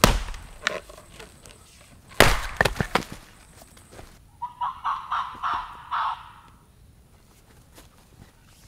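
Axe splitting a birch round on a wooden chopping block: one strike right at the start and a second about two seconds in, followed by a few quick knocks. From about four to six seconds, a run of about seven short, evenly spaced pitched notes, about four a second.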